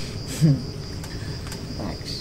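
Crickets chirping, a steady high-pitched note, with a brief vocal murmur about half a second in.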